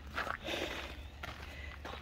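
Faint footsteps scuffing on gravel and grass as someone walks, over a steady low rumble.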